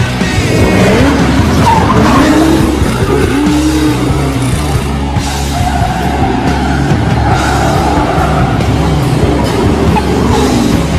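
Supercharged VW Baja Bug's engine revving hard, its pitch rising and falling several times in the first few seconds, with tyres skidding on pavement, over background music.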